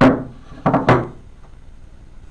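Round wooden chopping board set down on a wooden tabletop: a loud wooden knock, then two more knocks in quick succession a little over half a second later.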